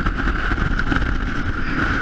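Strong gale-force wind buffeting an action camera's microphone in a snowstorm: a steady deep rumble with a thin, steady whistling tone above it.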